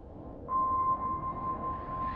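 A steady, high electronic tone like a sonar ping, held over a low rumbling drone. It swells suddenly louder about half a second in, with a fainter, higher tone joining it.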